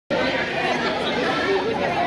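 Chatter of many overlapping voices from a crowd of children in a large hall, at a steady level.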